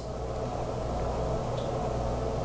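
Steady low hum and hiss of room background noise, even throughout, with nothing else sounding.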